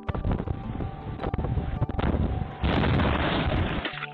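Brick gable end wall of a house collapsing into the street: a rough, crashing rumble of falling brickwork with wind noise on the microphone, growing louder about two and a half seconds in. The sound is muffled and thin, as heard through a doorbell camera's microphone.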